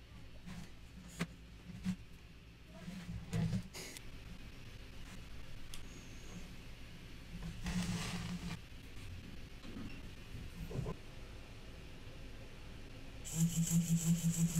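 Light clicks and rubs of jumper wires being pushed into a solderless breadboard. Near the end a Hitec HS-322HD analog hobby servo starts whirring in quick pulses, about four a second, as it is driven all the way back and forth a little too fast for it to follow the PWM commands.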